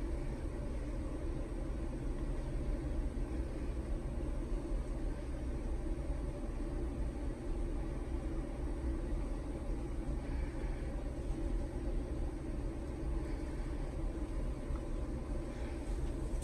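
Steady low background noise with no distinct events.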